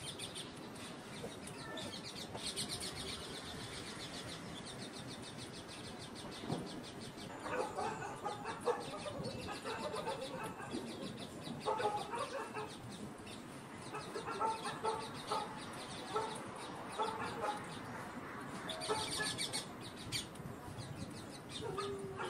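Rose-ringed parakeet making soft, low chattering mumbles in short clusters, with patches of rapid fine clicking near the start and near the end.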